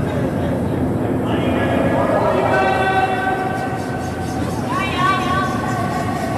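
Curling stone rumbling down the pebbled ice, with players shouting long, drawn-out sweeping calls from about a second and a half in and again near the end.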